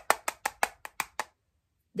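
Rapid fingernail taps on a smartphone screen, about seven a second, stopping a little over a second in: impatient tapping at a phone whose Wi-Fi connection has stalled.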